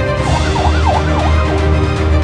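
A siren wailing in fast up-and-down sweeps, about three a second, over background music with a steady bass line. The siren fades out toward the end.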